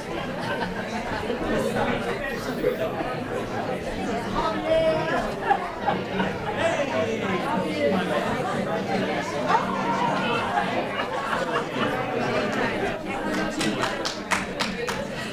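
Many people talking at once, an even hubbub of overlapping conversation with no single voice standing out, echoing in a large hall.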